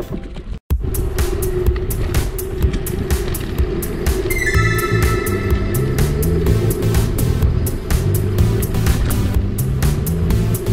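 Background music with a steady beat and a moving bass line. The sound cuts out for an instant about half a second in.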